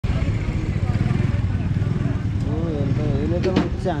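Honda Dio scooter's small single-cylinder engine running as the scooter rides past close by and pulls away round the track. Voices call out from about two and a half seconds in.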